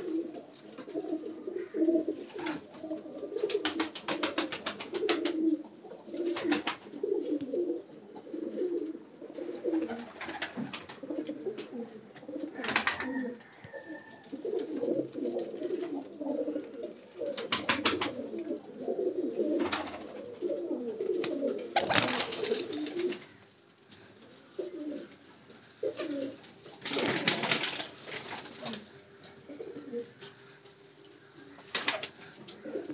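Qasoori (Kasuri) jaldar pigeons cooing almost without pause, several birds calling over one another. Short bursts of sharp rattling break in several times, the loudest near the end.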